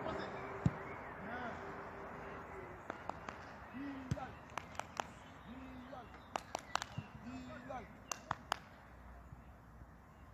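A football struck hard once, a sharp thud under a second in, then a scattering of fainter sharp knocks and short distant shouts.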